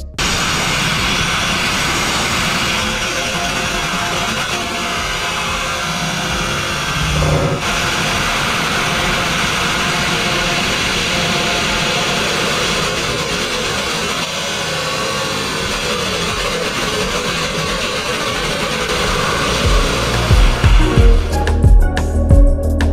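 Abrasive grit-blast nozzle running continuously: a loud, steady hiss of compressed air and grit stripping old bitumen and epoxy paint off a narrowboat's steel hull. Background music with a beat comes in near the end.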